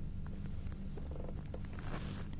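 A pause in the talk: a steady low hum of room tone, with a few faint, short clicks.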